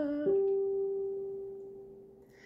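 A sung phrase ends, then a single steady, almost pure musical note holds and fades away smoothly over about two seconds.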